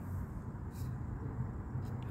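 Steady low background hum, with a brief soft hiss or rustle just before a second in.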